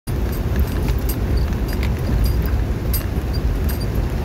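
Vehicle driving along a rough, wet dirt road: a steady low rumble of engine and road noise, with scattered sharp ticks.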